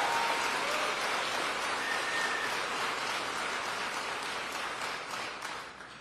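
Audience applauding, the clapping fading out near the end.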